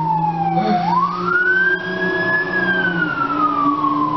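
Emergency vehicle siren wailing. The pitch falls slowly, sweeps quickly back up about a second in, holds high briefly, then falls slowly again.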